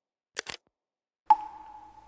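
Animation sound effects: a quick double pop, then a sharp ding that rings on one clear pitch and fades away over about a second.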